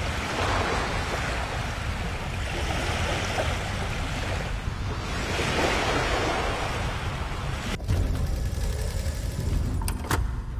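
Ocean surf: waves washing in as a rushing noise that swells and eases every few seconds.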